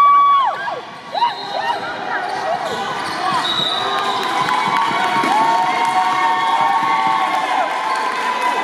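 Sneakers squeaking on a hardwood gym floor, a sharp squeal right at the start and shorter chirps after it, with a basketball bouncing and players and spectators calling out in a large gym.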